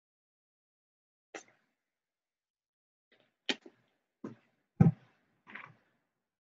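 Five short knocks and clicks from a small plastic e-liquid bottle being handled and set down, with silence between them; the fourth is the loudest, a dull thump.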